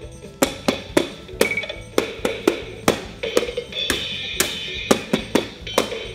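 VTech KidiBeats toy drum set's electronic drum sounds, set off by plastic drumsticks tapping its pads in an uneven beat of about two to three strikes a second. The toy's own backing melody plays underneath.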